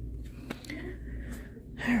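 A soft breath close to the phone's microphone over a steady low hum of shop background, with one light click about half a second in. Speech begins near the end.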